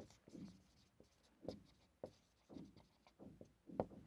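Faint, short strokes of a marker pen on a whiteboard as a line of words is written.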